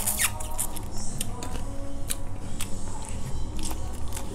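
Close-up eating sounds from a person chewing and sucking food off his fingers: a quick run of wet smacks and clicks at the start, then scattered clicks, over a steady low hum.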